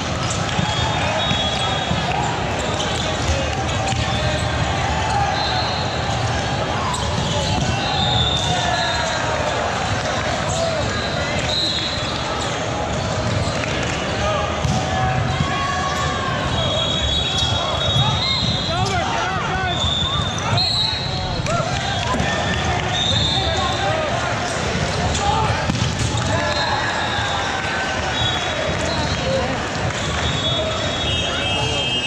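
Busy volleyball gym: voices and calls of players and onlookers in a large hall, with sneakers squeaking in short high chirps on the hardwood court and scattered thuds of volleyballs being hit and bounced.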